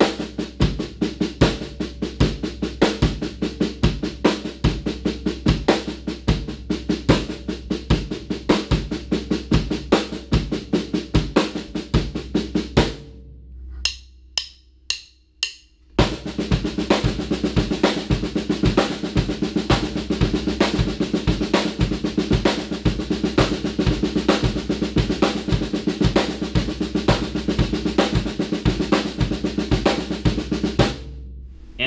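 Snare drum played in sixteenth notes in a seven-stroke sticking pattern over a steady quarter-note bass drum. It stops about 13 seconds in, four sharp clicks count in, and the same pattern resumes at a faster tempo.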